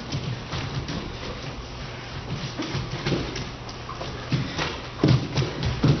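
Bare feet thudding and slapping on a studio floor as dancers run, step and land, in an irregular patter with a few heavier thumps near the end. A steady low hum lies underneath.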